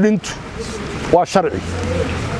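A man's voice in two short spoken bursts, at the very start and about a second in, with pauses between. A steady low rumble runs underneath.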